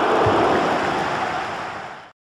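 A steady rushing noise, the sound effect under an animated logo intro, fading out near the end.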